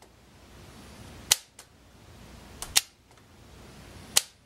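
An HO scale RailCrew switch machine being thrown back and forth by its fascia-mounted toggle lever. It gives two sharp clicks about a second and a half apart, each with a fainter click close by.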